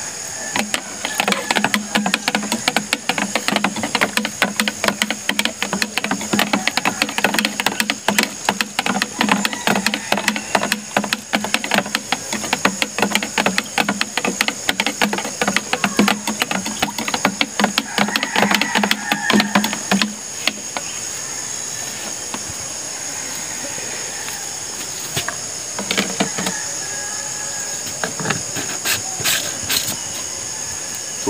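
Knapsack sprayer running with a fast rattling buzz and hiss while the chemical in its tank is mixed, stopping about twenty seconds in. A steadier hiss and a few light knocks follow.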